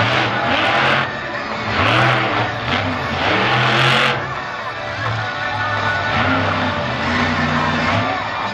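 Monster truck engine revving hard in three loud bursts, the last about four seconds in, mixed with background music.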